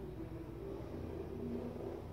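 Steady low background rumble with faint humming tones and no distinct events.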